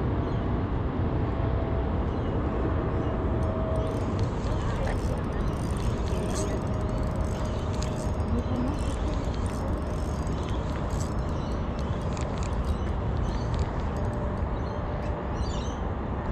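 Steady low outdoor rumble of distant road traffic, with faint scattered ticks from a spinning reel being wound and jigged.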